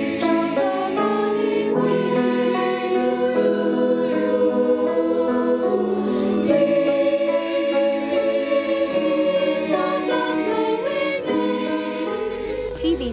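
A choir singing: many voices holding sustained chords that move to new notes every second or so.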